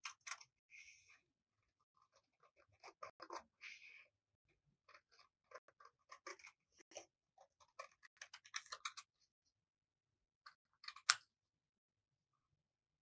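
Scissors snipping through a sheet of paper in short, irregular cuts, with a sharper, louder click about eleven seconds in.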